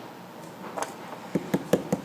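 A few soft taps and clicks of hands working a flat clay coil on a wooden table, pressing down air pockets in the clay, starting a little under a second in.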